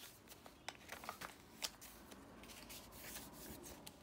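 Faint rustling of paper and cardstock with a few light clicks, as journal pages are handled and turned and a small tag is picked out of a pocket.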